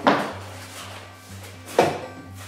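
Two sharp hard clacks, one at the start and a louder one near the end, as a metal-plated light or camera snaps onto the neodymium magnet of a quick-change mount, over faint background music.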